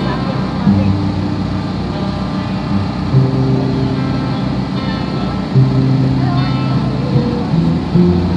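Slow music of long held low chords that change every second or two, with voices mixed in.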